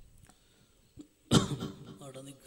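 A person coughs once, loudly and suddenly, a little past the middle, after a quiet stretch.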